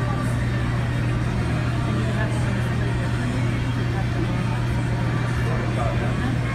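Coast Guard MH-60T Jayhawk helicopter hovering close by with its hoist cable down: a loud, steady rotor and turbine drone with a constant low hum under it.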